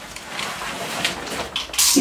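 A thick panel wallpaper sheet rustling as it unrolls down the wall, with a sharper crinkle near the end.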